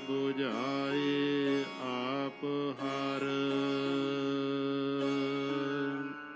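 Sikh Gurbani kirtan: a voice singing a drawn-out, ornamented line, sliding and wavering in pitch for the first two seconds, then held on one long steady note, over the sustained notes of a harmonium.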